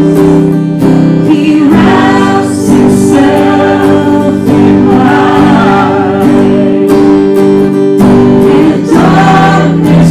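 Worship song sung by a man's and a woman's voices together into microphones, with guitar accompaniment holding sustained chords under the melody.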